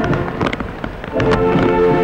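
Military band music with sustained brass-like tones, which drops away briefly about a third of a second in and comes back just after a second; in the lull the hiss of steady rain is heard.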